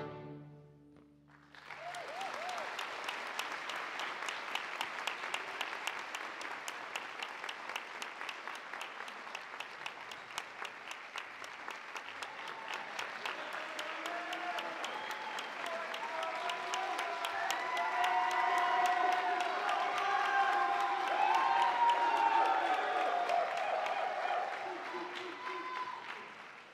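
The last notes of a string orchestra end, and after a brief hush an audience bursts into steady applause. In the second half, voices calling out and cheering rise over the clapping, loudest about two-thirds through, before it starts to die down near the end.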